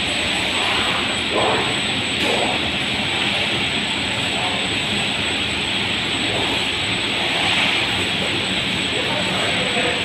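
Multi-station web printing press running at speed: a steady hiss of rollers and drives with a thin, steady high whine, and faint voices in the hall behind it.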